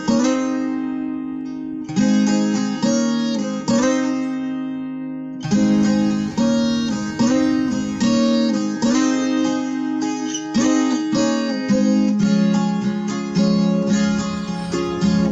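Music played on a plucked, strummed acoustic string instrument, with a chord struck about once a second, each left to ring.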